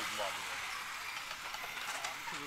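A voice trails off at the start, then steady outdoor background noise with faint, indistinct voices.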